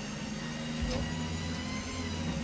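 Steady electric hum of a spit-roast rotisserie motor turning a whole pig over charcoal, with a low rumble joining about a second in.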